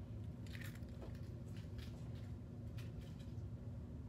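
A steady low hum with a few brief, faint scratchy noises from hand work at an electronics bench.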